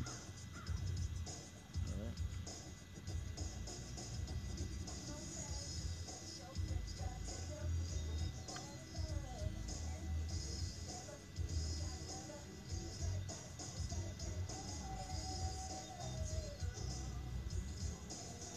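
Wind gusting on the microphone, with faint wavering calls of gulls now and then.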